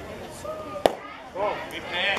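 A single sharp crack of a baseball being struck at home plate during a pitch, over spectators talking.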